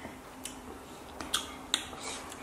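Three sharp, wet mouth smacks from eating and sucking seasoned lime wedges: a light one about half a second in, then two louder ones close together in the second half.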